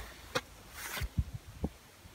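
Faint handling noise in a pause: a sharp click, a short breathy hiss, then two low thumps.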